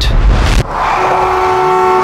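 Car sound effect: a heavy low engine rumble, then from about a second in a car horn held on a steady chord of several tones, with a rising engine note beneath it.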